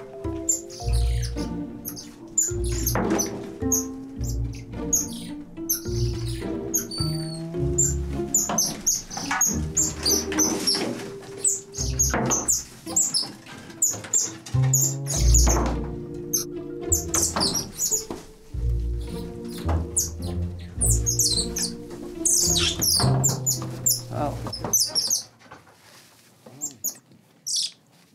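Background music with a steady pulsing bass, with many short, high-pitched chirps scattered over it. Near the end the music drops away, leaving it much quieter with a few last chirps.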